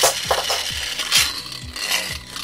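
A toy spinning top released from its launcher with a sharp click, then spinning and rattling on a hand-held plastic arena dish, with another loud click about a second in.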